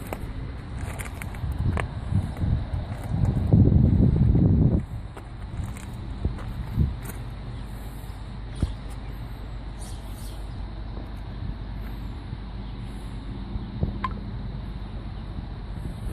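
Bobcat S570 skid-steer loader's diesel engine idling steadily. Wind buffets the microphone in a loud rumbling gust about three seconds in, lasting under two seconds.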